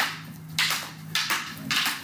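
Fighting sticks clacking together as partners strike each other's sticks in a double-stick drill: several sharp wooden clacks, about two a second.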